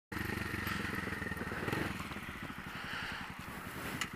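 Suzuki GN250's single-cylinder four-stroke engine through a short megaphone exhaust, running with a rapid, even beat of exhaust pulses as the bike pulls away from a stop. The owner calls the exhaust loud.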